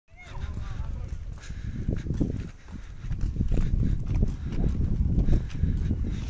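Footsteps on dry, dusty dirt as people walk, with irregular knocks under a heavy low rumble. A short, wavering high-pitched call sounds at the very start.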